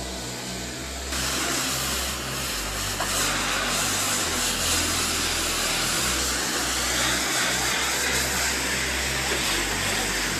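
Pressure washer spraying a water jet against a painted building facade and windows, a steady loud hiss that gets louder about a second in.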